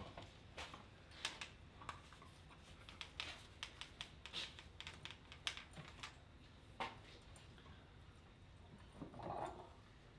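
Light clicks and taps of a vector wrench wrist-training handle and its strap and metal carabiner being handled as the grip is set, irregular and several a second for the first seven seconds. A short vocal sound, a grunt or breath, comes near the end.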